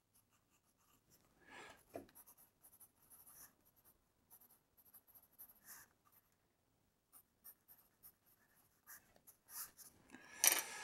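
Faint scratching of a pencil writing on graph paper in a spiral notebook, in short, irregular strokes with brief pauses between them.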